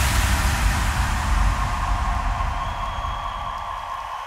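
Frenchcore electronic track in a transition: a noisy wash with deep rumbling bass, left over from a heavy hit, slowly fades out. A faint steady high tone comes in near the end.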